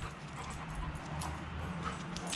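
Soft sounds from a black Labrador at play, with a few faint light taps.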